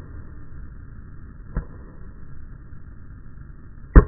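Tennis racket striking the ball on a serve: one sharp, loud pop right at the end, after a fainter single knock about a second and a half in, over a steady low background hiss.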